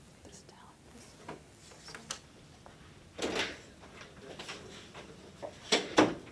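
Hushed whispering among students at a table, with a breathy stretch about three seconds in. There are a few faint clicks and a short, louder knock near the end.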